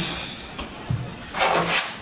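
Room door being opened by hand as people walk out over carpet: a soft knock about a second in, then a short rustling swish.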